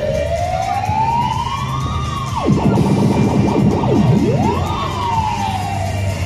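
Siren-like wailing sound effect from a fairground ride's sound system over loud dance music. The tone rises slowly, dives steeply low about two and a half seconds in, sweeps back up just before the five-second mark, then slowly falls.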